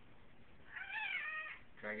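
A house cat meowing once, a single call of under a second that rises and then falls in pitch.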